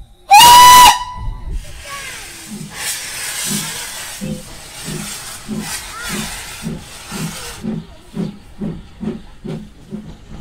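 A Peckett 0-6-0 tank engine gives one short, loud blast on its steam whistle, then starts away with steam hissing from the open cylinder drain cocks. Its exhaust beats quicken from about one and a half to about two and a half a second, and the hiss stops about three-quarters of the way through.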